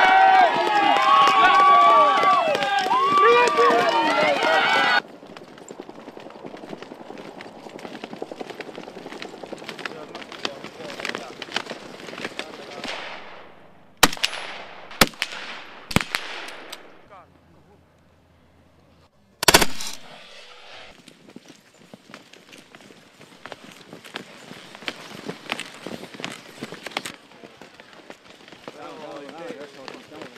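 A crowd shouting and cheering, cut off about five seconds in, then skis and poles scraping over snow. Near the middle come three sharp rifle shots about a second apart, a brief near silence, and then a loud quick burst of shots, before the skis scrape on snow again.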